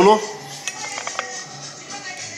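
Metal fork clinking a few times against a small ceramic dish while scooping ceviche, about a second in, over faint background music.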